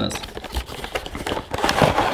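Cardboard flashlight box being opened by hand: the flaps are pulled open and the inner packaging slid out, giving a quick run of rustles, scrapes and small clicks.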